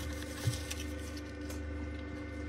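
Faint handling noise as a hand reaches into a wooden cigar box and lifts out a cigar: a soft knock about half a second in and a few light ticks, over a steady low hum.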